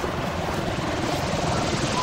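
A steady rushing noise outdoors, with no speech.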